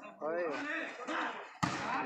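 A volleyball struck hard once, a single sharp smack near the end, after people shouting in the first part.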